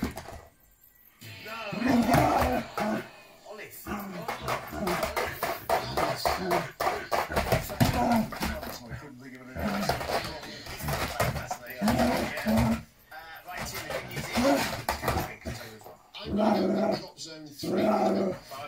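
A dog worrying at a rug that has a treat wrapped in it: dog noises mixed with scratching and rustling of the rug, over television quiz-show voices and music in the background.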